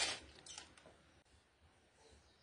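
Roasted coffee beans rasping against a metal tray as a scoop stirs them, in two short bursts in the first half-second, then only faint background.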